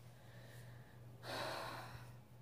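A single audible breath from a woman, about half a second long, a little over a second in, over a faint steady low hum.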